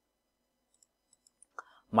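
Near silence broken by a few faint computer mouse clicks about a second in, as a new chart is selected in the charting program; a man starts speaking right at the end.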